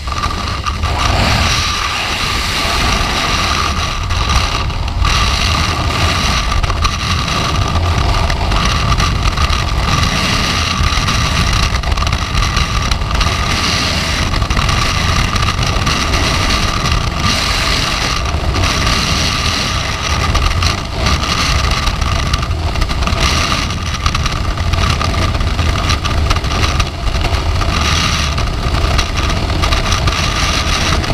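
Freefall wind rushing over a skydiver's camera microphone: loud and steady with a deep buffeting rumble, jumping up in level just as the jumper leaves the aircraft door.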